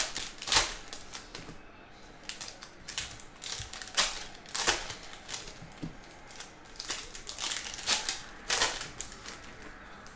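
Trading-card pack wrappers being torn open and stiff hockey cards handled and flipped against each other: an irregular run of sharp crinkles and clicks.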